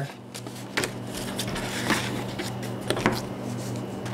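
A few light clicks and taps, about a second apart, as a paper pattern and hand tools are handled on a bench cutting mat, over a steady low electrical hum.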